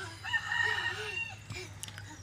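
A rooster crowing once, a single held call about a second long.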